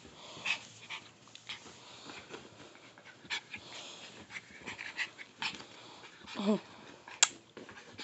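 Chihuahua puppy playing with its plush toys: scattered soft rustles and small knocks, with one brief pitched sound about six and a half seconds in and a sharp click a little after seven seconds.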